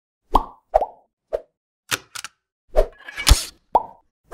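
Sound effects for an animated logo intro: a quick string of separate cartoon-like plops and clicks, about eight in four seconds, with a short rush of noise ending in a low thump about three and a quarter seconds in.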